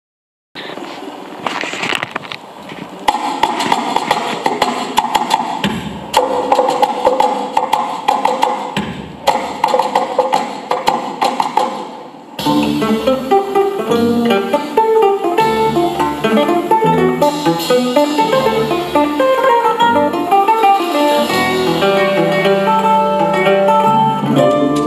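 Ten-string bandolim (Brazilian mandolin) playing an instrumental introduction, backed by bass and percussion. About halfway through, the sound changes abruptly from a noisier, rhythmic passage to clear picked melody lines over low bass notes.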